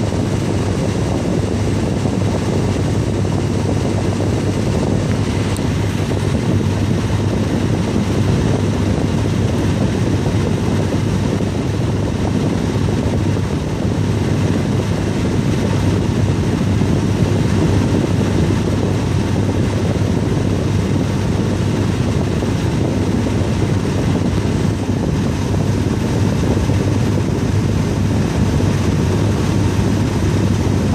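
Car air conditioning running, the dash vent blowing a steady rush of air with a low hum underneath. The system is cooling: the vent air falls from the mid-40s to the mid-30s °F.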